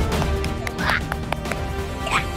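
Dramatic TV background score, with a short rising sweep sound effect about a second in and a few sharp clicks.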